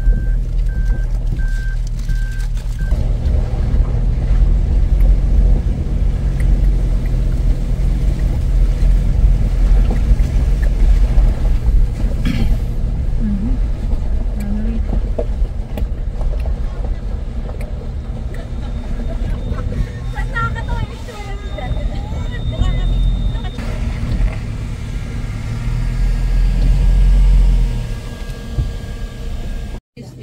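SUV driving slowly over a rough gravel track, a steady low rumble of engine and tyres heard from inside the vehicle, with an evenly repeating high beep for the first few seconds.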